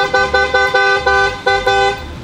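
Minivan horn honked over and over: a quick run of short beeps, one longer blast in the middle, then a few more short beeps.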